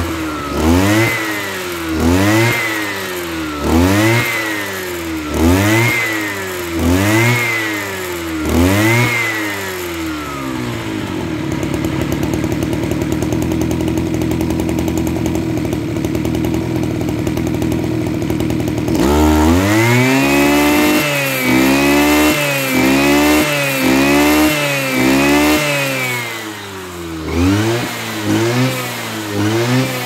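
Mitsubishi TL33 brush cutter's 33cc two-stroke engine (36 mm bore) being revved and let back down again and again: about seven revs in the first ten seconds, then a steady idle, then a quicker run of throttle blips from about the twentieth second, and a few more revs near the end.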